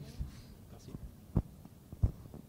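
A quiet pause of room noise with a low hum. Two soft, low thumps sound through the microphones, a faint one at the start and a clearer one about a second and a half in.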